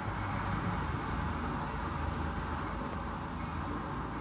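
Steady low rumble of freeway traffic mixed with an Amtrak Pacific Surfliner passenger train approaching in the distance.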